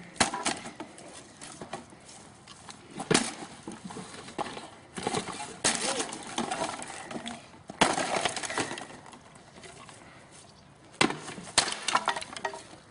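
A small wooden desk being smashed apart by blows from a long-handled tool: several sharp cracks of breaking wood a few seconds apart, with two strikes close together near the end.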